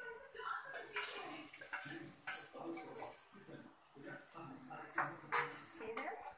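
A metal spoon scraping and clinking against steel cookware as noodles are scooped out of a saucepan into a larger pot and stirred. It makes a run of irregular clatters and knocks.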